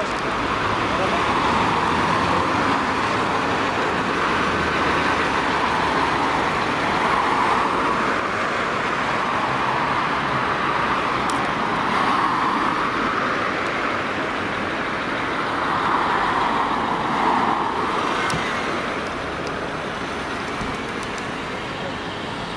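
Road traffic on a city street: a steady wash of passing cars that swells and fades every few seconds.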